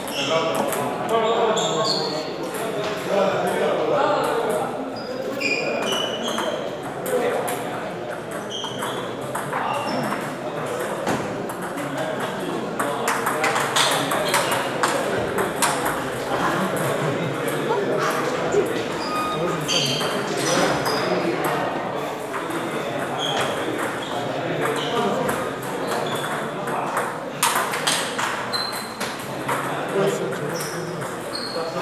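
Table tennis balls striking paddles and tables, many short ticks from several matches in play at once, over a steady murmur of voices in a large hall.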